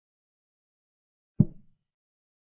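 A single short, low wooden-sounding clack of a chess program's piece-move sound effect about one and a half seconds in, as a queen is moved on the board, fading within a third of a second against otherwise silent audio.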